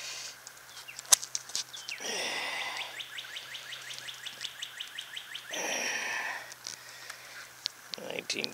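A small bird's trill, a rapid even series of high notes at about seven a second lasting a few seconds, with two breathy puffs of noise and a few sharp clicks around it.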